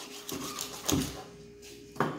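Kitchen knife cutting through a stuffed chicken neck on a thick wooden cutting board, with a few sharp knocks of the blade on the wood in the first second, then quieter.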